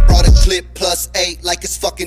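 Hip-hop track with rapping. The heavy bass beat cuts out about half a second in, leaving the rapper's voice alone.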